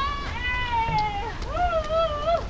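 Two drawn-out, high-pitched wavering cries: the first about a second and a half long and sliding slightly down, the second shorter and lower.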